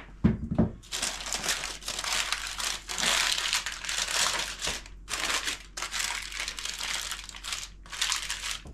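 Baking paper crinkling and rustling as it is folded and pressed down around the rim of a baking dish, in a run of crackly bursts with a couple of short pauses. A brief low knock sounds just at the start.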